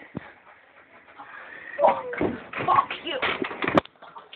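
Rustling, knocks and handling noise close to the microphone with brief cries or shouts, starting about two seconds in after a quieter opening.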